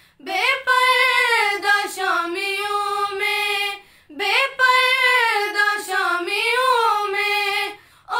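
Three young women singing a noha, an unaccompanied Urdu lament, in unison. Two long drawn-out sung phrases, with a short breath break about four seconds in.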